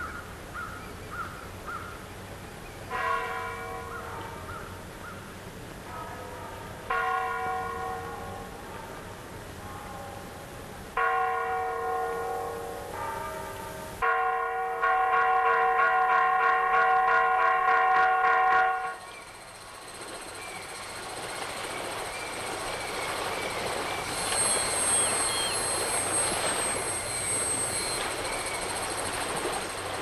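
A large bell tolling: three strokes about four seconds apart, each ringing and fading away, then a louder sustained ring that cuts off suddenly about nineteen seconds in. A steady rushing noise follows.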